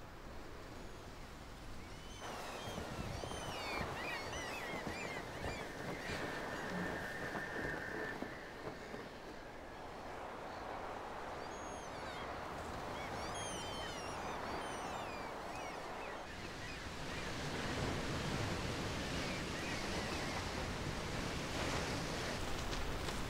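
Quiet outdoor ambience: a steady hiss with bursts of small birds chirping, and a louder rushing wash like distant surf over the last several seconds.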